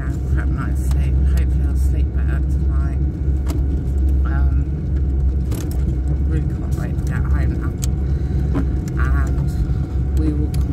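Steady low rumble of a car in motion, heard from inside the cabin, with brief snatches of a voice over it.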